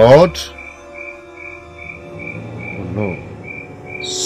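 Sustained background music chords with a high chirping pulse repeating about twice a second. A short, loud vocal exclamation comes right at the start, and a brief murmur about three seconds in.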